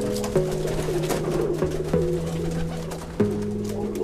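Background music of held chords that change every second or so, with domestic pigeons cooing in the loft.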